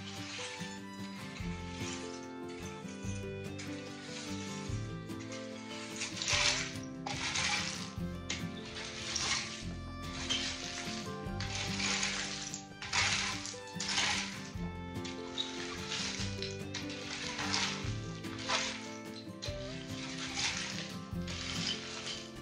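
Rake scraping loose rock and gravel across an earth floor in repeated strokes, about one a second, over background music.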